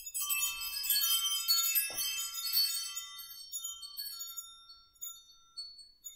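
Chimes ringing: a cluster of high, bell-like tones that starts suddenly, rings densely for a couple of seconds and then thins out and dies away over about five seconds.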